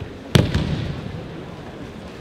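A single loud slap of a body landing on tatami mats in an aikido breakfall, about a third of a second in, with a lighter knock just after.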